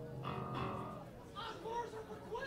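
Electric guitar chord ringing out between songs, dying away after about a second, then crowd voices chattering.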